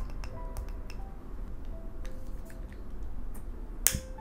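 Fingernails tapping on a glass candle jar, each light tap leaving a short ringing tone. Just before the end, a lighter is struck with one sharp click that lights its flame.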